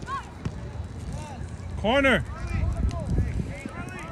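Shouting voices of youth soccer players and sideline spectators: several short calls, with one loud shout about halfway through.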